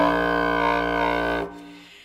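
Instrumental music: a single low woodwind note held steady for about a second and a half, then dying away.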